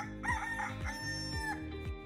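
A person singing along loudly to music in a car, holding one long high note about a second in, over the song's steady beat.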